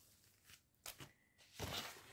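Faint rustling and a few light clicks of plastic-packeted embroidery kits being handled and set down, with a longer rustle near the end.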